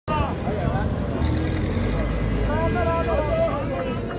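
Men's voices calling out, twice in short spells, over the steady low rumble of a vehicle engine running.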